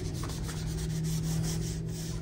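A paper towel rubbed back and forth over a painted paper surface, a run of repeated dry scratchy strokes.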